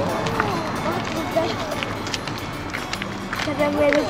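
Footsteps on paved ground as people walk, with voices talking over them.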